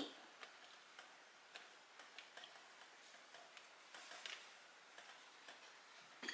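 Near silence with a few faint, irregular clicks and light handling as a cloth liner is tucked into a wicker basket.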